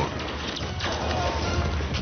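Handling noise on a helmet camera's microphone: rustling and a few light knocks from the parachute gear and the fallen skydiver moving against the lens, under background music.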